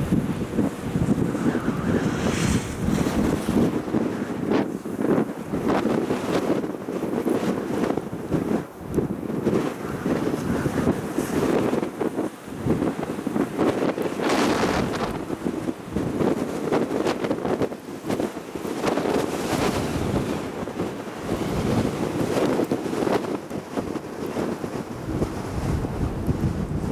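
Wind buffeting the microphone during a ride on an open chairlift, a loud, gusty rushing that swells and falls throughout, with several stronger gusts.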